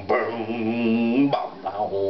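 A man's voice holds one long wordless sung note for about a second over strummed acoustic guitars, then breaks into shorter vocal phrases.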